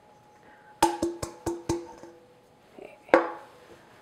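Stainless steel mixing bowl tapped five times in quick succession, then once more, harder, about two seconds later, ringing after each tap as the last of the flour-and-sugar mixture is knocked out onto the berries.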